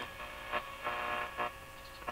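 Zenith Trans-Oceanic tube radio tuned off-station: a faint steady hum and hiss, broken by a few short crackles as the dial moves between stations.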